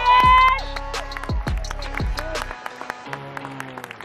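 Music with a deep beat plays while the audience cheers and claps, with a held high "woo" right at the start. The bass beat drops out about two and a half seconds in, leaving lighter music.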